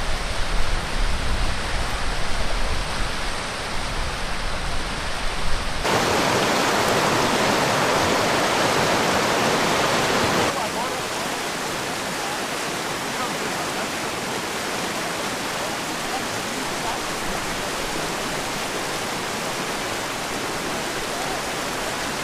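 A rocky mountain river rushing over rapids, a steady hiss of flowing water. A low, uneven rumble sits under it for the first six seconds. The water grows louder for a few seconds after that, then settles to an even level.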